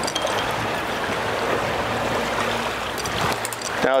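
Steady rush of wind and sea water around a boat on open, choppy water, with a faint low hum through the middle.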